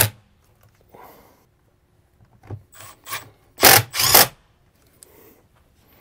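Milwaukee Fuel cordless driver running a screw in a few short bursts, the last two, a little past halfway through, the loudest.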